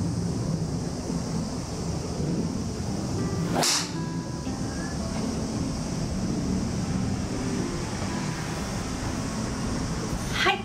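Golf driver striking a teed ball: one sharp crack about three and a half seconds in, over steady background music.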